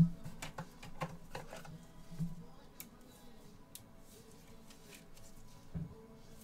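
Trading cards and a hard clear plastic card holder being handled by gloved hands: a knock at the start, then a run of light plastic clicks and taps for about two seconds, and another tap just before the end.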